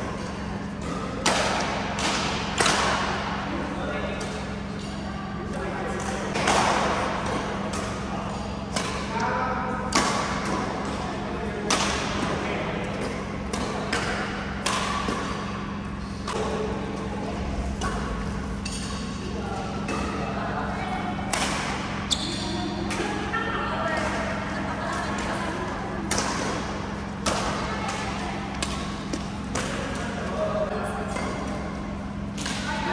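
Badminton rally: rackets striking a shuttlecock with sharp cracks at an irregular pace, about one every second or two, ringing in a large echoing hall. Background chatter and a steady low hum from the hall run underneath.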